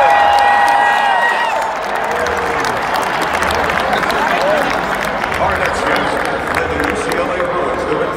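Large stadium crowd cheering and applauding, with many hands clapping. Long held shouts ring out at the start and die away about a second and a half in.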